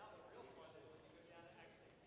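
Faint, indistinct chatter of several people talking in a hall, too quiet to make out words.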